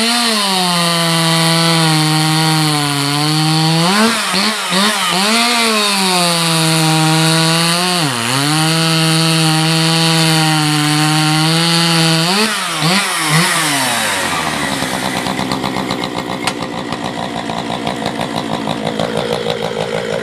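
Dolmar PS-5105 two-stroke chainsaw cutting through an oak log at high revs, the engine pitch dipping and rising briefly around 4, 8 and 13 seconds in. About 14 seconds in it drops to a low, evenly pulsing idle.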